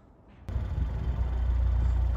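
A BMW 420i's 2-litre turbo petrol engine idling: a steady low rumble that starts abruptly about half a second in.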